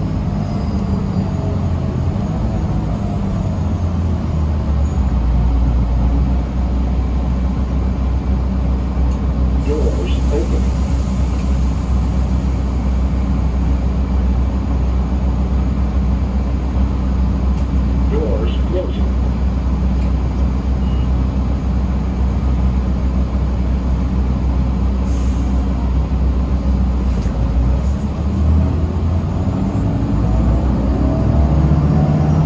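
Inside a 2017 Gillig BRT 40-foot transit bus under way: steady low engine and road drone. A hiss of air, typical of the bus's air brakes, lasts about four seconds starting about ten seconds in.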